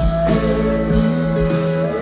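Live rock band playing loud through a concert PA, an instrumental passage without vocals, electric guitar among the instruments.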